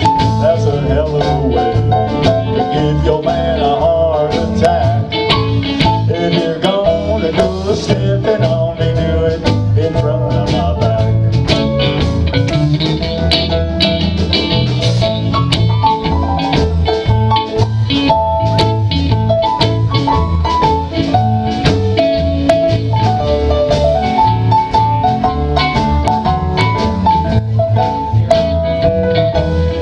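Live country band playing an instrumental break of a honky-tonk song: guitars, keyboard, bass and drum kit over a steady beat, with a melody line moving on top.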